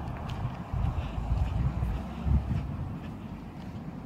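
Wind buffeting a handheld phone's microphone outdoors: a low, uneven rumble that swells in gusts and eases off towards the end.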